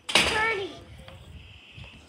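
A young girl's short, loud wordless cry, about half a second long, falling in pitch, just after the start.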